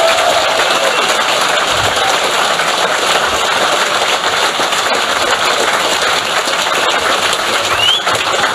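Large audience applauding steadily: a dense, even clatter of many hands clapping.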